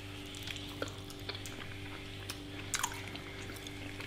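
Quiet chewing: scattered small, wet mouth clicks from several people chewing gummy chocolate-and-beef fudge, over a steady low hum.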